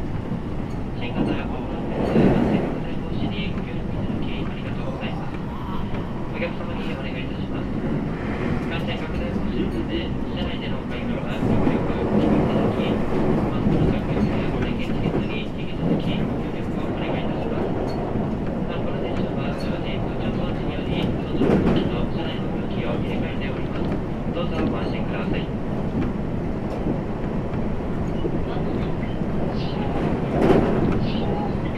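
Running noise of a JR West 225 series 0 subseries electric train under way, heard from inside the car: a steady rumble of wheels on rail and motor noise, with a few louder surges.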